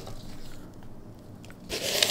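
Quiet handling of a round cardboard tube box and its foam insert, ending in a short scraping rustle of foam or cardboard against cardboard near the end.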